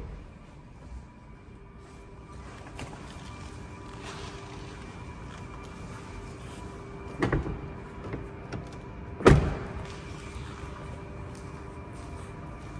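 Car door being shut: a knock about seven seconds in, then a heavy, solid thump about nine seconds in, the loudest sound here, over a faint steady hum.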